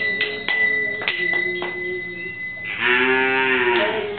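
A cow mooing once near the end: a single call of about a second that rises and then falls in pitch.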